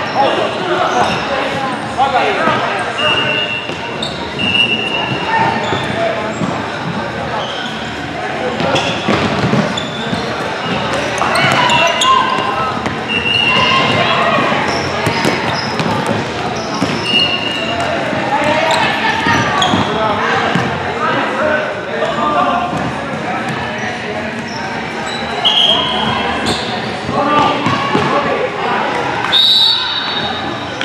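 Futsal game on a hardwood gym floor: the ball repeatedly thuds off the floor and players' feet, with brief high sneaker squeaks every few seconds. Voices call out over the echo of a large hall.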